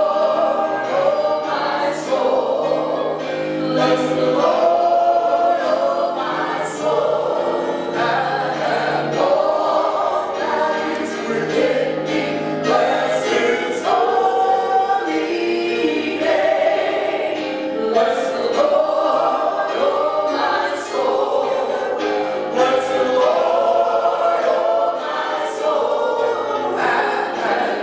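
Gospel praise and worship singing, with a man leading at a microphone and many voices singing along.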